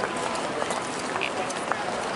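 Outdoor city ambience picked up by a handheld camera on the move: a steady, even noisy rush with faint voices of people nearby and a few small handling clicks.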